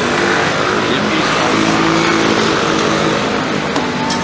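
Motor scooter engine running close by, with a steady hum strongest through the middle, over busy street noise.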